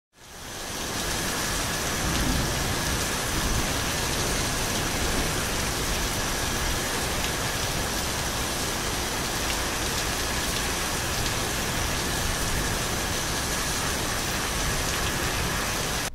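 Intro sound effect of a steady, dense hiss with faint scattered crackles. It fades in over the first second and cuts off suddenly.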